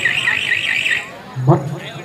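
A high warbling tone, alarm-like and wobbling several times a second, that stops about a second in, with a man's voice under it and again near the end.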